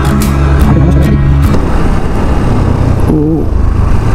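Background music fades out about a second and a half in. After that come the steady rush of wind on the microphone and the Bajaj Pulsar NS160's single-cylinder engine as the motorcycle is ridden along.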